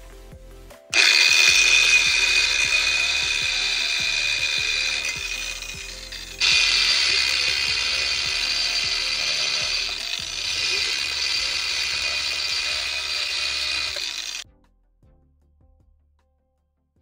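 Hoverboard wheel's hub motor spun up as a generator: a loud mechanical whir with a ratchety rattle, which cuts out and starts again about six seconds in and stops suddenly about a second and a half before the end.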